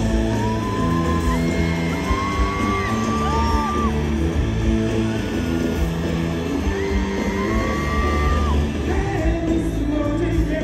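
Live band music from a stadium PA, heard from the audience, with a steady bass and beat and a voice singing long held high notes.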